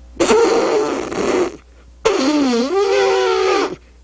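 A man imitating an elephant's trumpeting with his voice: two long, raspy blasts, the second dipping in pitch and then rising again.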